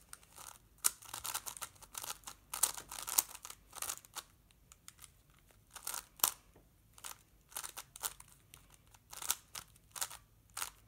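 Plastic puzzle cube being turned rapidly by hand: irregular clicking and scraping of the layers in quick flurries with short pauses.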